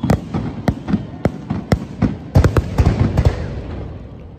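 Fireworks going off in a run of sharp bangs and crackles, thickest between about two and a half and three and a half seconds in, then dying away near the end.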